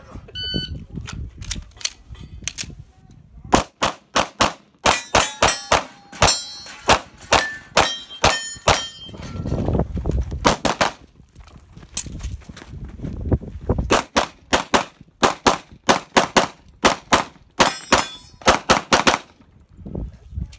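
A pistol is fired in rapid strings of shots, many in quick pairs, with short pauses while the shooter moves. An electronic shot timer beeps about half a second in. A few shots leave a brief metallic ring.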